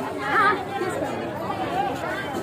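Several people talking and chattering close by, with one voice rising briefly about half a second in. No music is heard.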